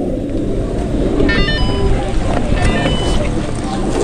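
Chairlift terminal machinery running with a loud, steady low rumble as chairs come around the loading station, with two short runs of high-pitched squeaks about a second in and again near three seconds.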